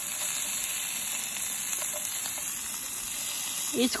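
Beef kebabs sizzling in a frying pan on a portable gas stove, a steady hiss.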